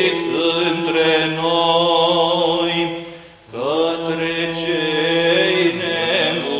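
Romanian Orthodox Byzantine-style chant from Matins in the seventh tone (glas 7), sung with a low note held steady beneath the moving melody. About three and a half seconds in, the singing breaks off briefly for a breath and then resumes.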